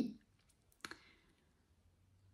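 A single short click just under a second in, against a quiet room.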